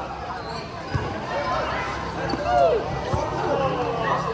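A volleyball being struck twice during a rally, a thud about a second in and another about three seconds in, among the high-pitched calls and shouts of young players.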